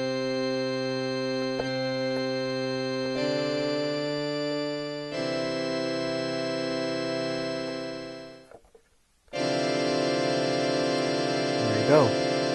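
Church organ preset in Beatmaker 2's keyboard sampler, played from an Akai MPK Mini MIDI keyboard. Held chords change about three and five seconds in and fade out after about eight seconds. After a brief silence, a new chord comes in.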